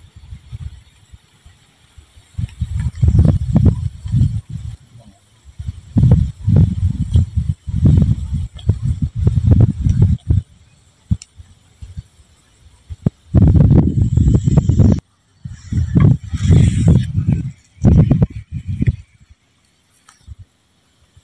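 Wind buffeting the microphone in gusts: a low rumble that comes and goes, starting about two seconds in, dropping away briefly around twelve seconds, and returning in two more bursts near the end.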